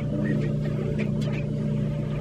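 Steady low mechanical hum, with a few faint light clicks.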